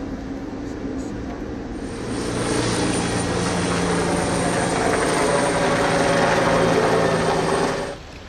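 Helicopter flying close by: its rotor and turbine noise, with a high steady whine, grows louder about two seconds in and cuts off abruptly near the end.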